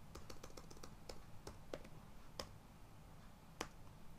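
Faint computer keyboard typing: a quick run of keystrokes in the first second, then scattered single keystrokes, the loudest about three and a half seconds in, over a low steady hum.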